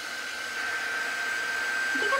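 Handheld craft heat tool blowing steadily, with a steady high whine over the rush of air, as it dries freshly applied chalk paste on a wooden round.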